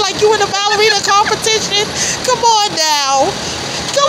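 Two women laughing hard in short repeated bursts, with one long falling-pitch cry near the end.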